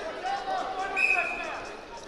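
Shouting voices of coaches and spectators echoing in a sports hall, with a short, steady high tone about a second in.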